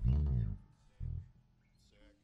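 Electric bass guitar through an amplifier: a loud low note that bends up and back down, stopped after about half a second, then a shorter second note about a second in.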